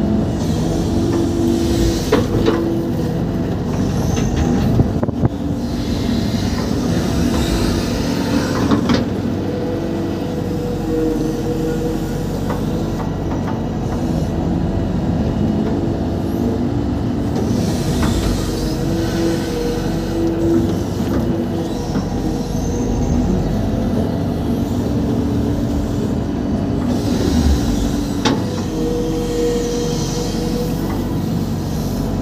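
Hitachi EX120-1 excavator heard from inside its cab, its diesel engine working steadily under load as the bucket digs and dumps mud. A few sharp clanks from the bucket and arm stand out over the engine.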